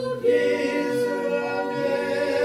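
Two men and a woman singing an Angami Naga praise song a cappella, with no instruments. After a short break a moment in, they hold a long note.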